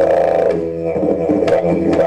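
Didgeridoo playing a continuous low drone with a rich stack of overtones. Two sharp clicks sound over it, one at the start and one about a second and a half later.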